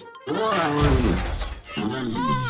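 A cartoon crash sound effect, something breaking and shattering, with a low thud, over background music.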